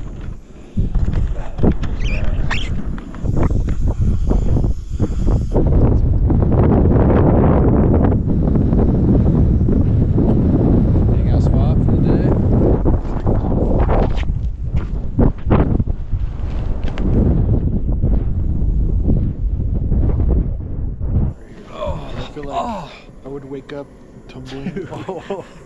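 Wind buffeting the microphone: a loud, low, gusty noise that rises and falls, dying away about three seconds before the end, when a man's voice comes through.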